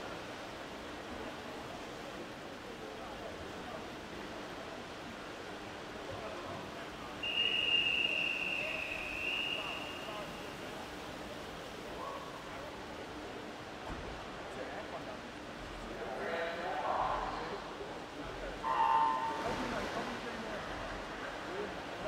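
Swimming-start sequence over the echoing hum of an indoor pool hall. About seven seconds in, the referee's whistle blows one long, steady note, signalling the backstrokers to the wall. Around sixteen seconds the starter makes a short call to take marks, and about three seconds later the electronic start signal sounds once and sets off the race.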